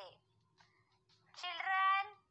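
A high-pitched, drawn-out voice starts after a near-silent pause, about two thirds of the way in.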